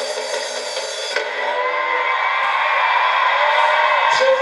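Live band music with drums and cymbals; the beat drops out a little over a second in and a smoother, sustained sound carries on.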